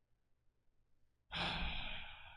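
A man's heavy sigh into a close microphone, starting about a second in and trailing off.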